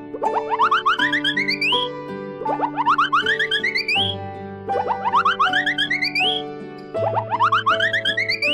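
Cheerful children's background music with a cartoon sound effect repeating over it: a quick run of rising pitch sweeps about every two seconds, timed with each ball popping out and landing in the pickup.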